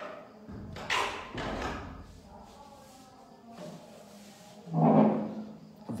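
Kirtan music coming over loudspeakers, with heavy thumps about a second in and again near the end.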